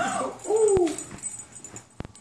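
A small dog whining in two short cries that rise and fall, with a sharp click about three-quarters of a second in.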